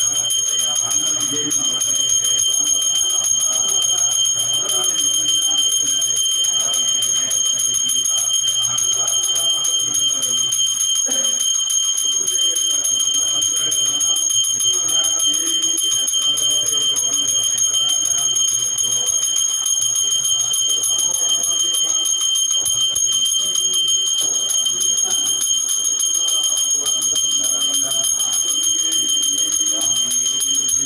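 Temple hand bell (ghanta) rung continuously, its high ringing held steady and unbroken, as is done while a flame is waved in aarti before the deities.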